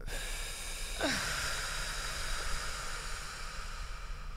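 A person letting out a long exhale after holding a deep breath: a breathy hiss with a short falling sigh about a second in, trailing off toward the end.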